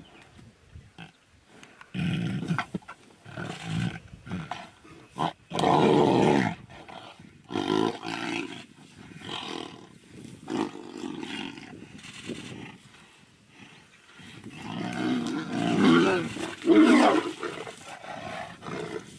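Tigers fighting, with repeated loud bouts of roars and snarls. The loudest come about six seconds in and again around fifteen to seventeen seconds.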